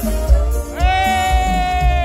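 Live cumbia band playing loud over the sound system with a heavy bass beat. Just under a second in, a high note slides up and is held.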